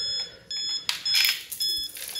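A Piso WiFi coin-vending box beeping repeatedly in insert-coin mode, waiting for coins to be dropped in, with short high-pitched electronic beeps coming roughly two to three a second. A short clatter sounds about a second in.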